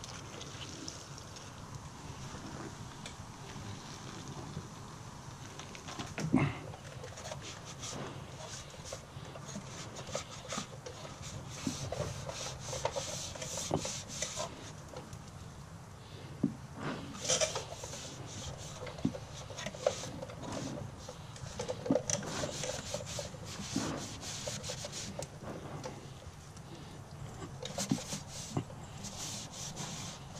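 A cloth rag wiping and scrubbing grease off the underside of a car's wheel well and suspension, in repeated scratchy rubbing strokes that come in clusters. There is a single knock about six seconds in.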